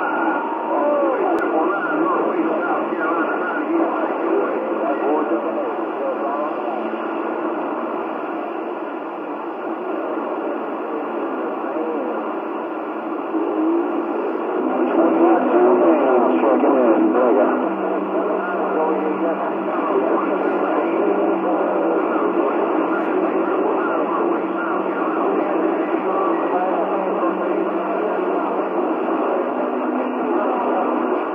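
CB radio receiver's speaker carrying distant skip signals: a jumble of faint, garbled voices that can't be made out, over low steady heterodyne tones that change pitch a few times, all in the radio's narrow, tinny audio. The signal swells louder for a few seconds in the middle.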